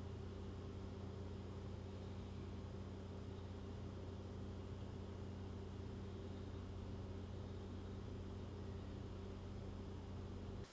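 Steady low hum with faint hiss: background room tone, with no other sound.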